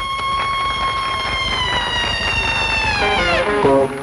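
A band opening a number with one long, steady high note held for about three seconds that slides down and breaks off, then plucked guitar and a beat start up in a swing rhythm.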